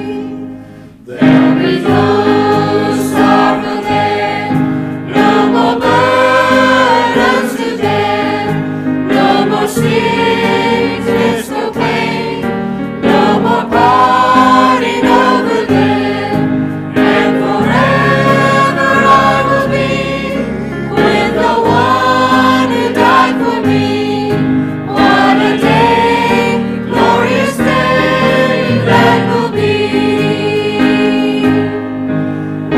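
Church choir of mixed men's and women's voices singing a hymn. There is a short break about a second in before the next phrase begins.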